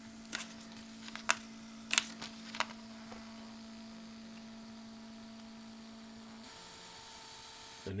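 Sony UP811 thermal video printer running a frame-grab print: a steady motor hum as the thermal paper feeds out, with several sharp clicks in the first three seconds. About six and a half seconds in the hum stops and a fainter, higher tone takes over.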